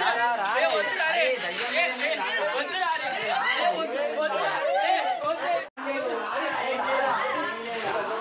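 Several young men talking over one another in an excited, overlapping chatter. The sound cuts out for an instant about three-quarters of the way through, then the chatter resumes.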